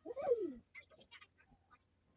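A single bird coo of about half a second that rises then falls in pitch, like a dove or pigeon, followed by faint short chirps.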